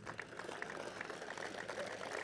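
Audience applauding, a faint, steady crackle of many hands clapping.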